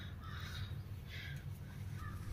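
Faint, harsh animal calls: several short calls in quick succession, over a steady low hum.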